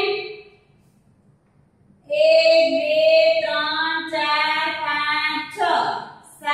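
A woman's voice chanting in a drawn-out, sing-song way with long held notes, starting about two seconds in after a short lull.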